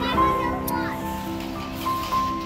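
Background music with long held notes under children's voices and chatter, with a short high squeal near the start.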